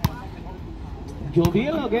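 Two sharp thuds about a second and a half apart: a volleyball bounced on the hard court by the server before his serve. A man's voice calls out after the second bounce.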